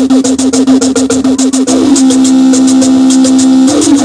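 Loud live electronic music: a steady held low note under fast, even high ticks. A rapid run of short falling pitch sweeps fills the first two seconds, and another falling sweep comes near the end.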